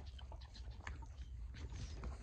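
Horse's muzzle nosing and lipping at the camera: soft scattered clicks and rubbing right on the microphone, over a steady low rumble.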